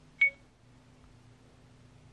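A single short electronic beep from the Acumen XR10 mirror dash cam's speaker as its touchscreen is tapped, about a quarter second in, followed by a faint steady hum.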